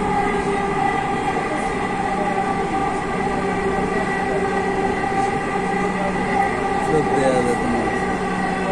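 Inside a Dhaka Metro Rail (MRT Line 6) train running on the elevated line: steady running noise with a steady whine of several held tones.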